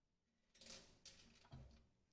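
Near silence, with three faint, brief handling sounds about halfway through: a gloved hand touching the steel parts inside an open diffusion pump.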